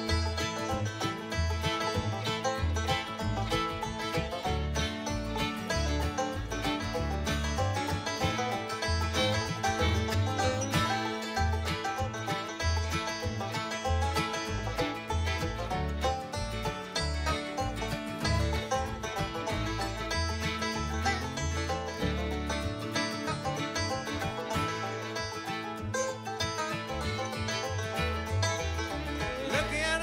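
Acoustic bluegrass band playing an instrumental break with no vocals: a five-string banjo stands out over acoustic guitar, mandolin, fiddle and a steady upright bass.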